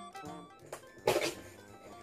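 A cardboard box being handled and folded open: a small click, then a short, loud scrape of cardboard about a second in, over quiet background music.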